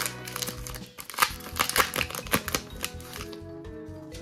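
Foil wrapper of a Pokémon card booster pack being torn open and crinkled: a quick run of sharp crackles that stops about three seconds in, over background music.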